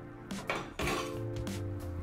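An enamel kitchen skimmer clinks against other kitchenware on a table as it is picked up: two light clinks about half a second and just under a second in. Steady background music plays underneath.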